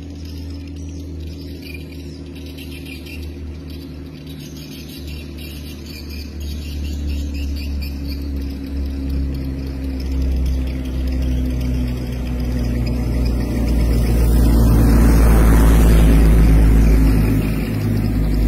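A car's engine running, growing steadily louder and loudest about two seconds before the end as it passes close, with a rush of road noise at its peak.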